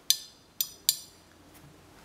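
Small neodymium magnet tapping three times on the aluminium platter of an opened hard drive: light metallic clinks with a brief ring. The magnet does not cling, the aluminium being non-magnetic.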